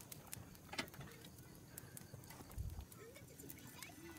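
Quiet outdoor ambience with a few faint sharp clicks in the first second, a dull low thump midway, and a faint voice near the end.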